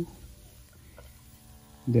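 A faint steady hum during a quiet pause, with a man's voice starting again near the end.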